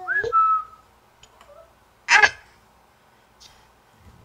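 A short whistle that rises and then holds briefly, then about two seconds in a single loud, harsh bird call.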